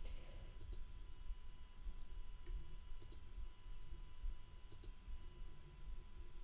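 A few faint computer mouse clicks, some in quick pairs, over a low steady hum.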